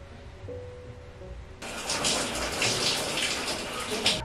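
Shower spray of running water, starting abruptly about a second and a half in and stopping near the end.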